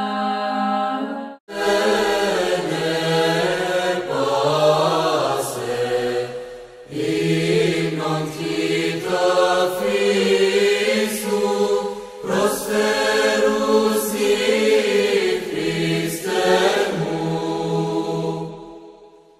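Orthodox church chant: voices sing a slow melody over a steady held low note, phrase by phrase, with short breaks about 7 and 12 seconds in. The singing breaks off abruptly about a second and a half in and starts again at once.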